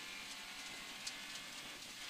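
A rally car driving on a stage, heard faintly and steadily from inside the cabin as even engine and road noise, with a small tick about a second in.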